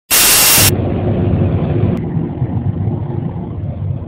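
A loud burst of static hiss for about half a second, then a steady low rumble with a faint hum underneath and a single click about two seconds in.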